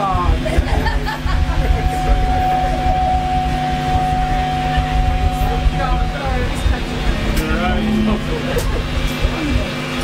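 Punk band playing live in a small room: loud, distorted bass guitar and pounding drums, with shouted vocals. A long steady high tone is held for about four seconds near the start.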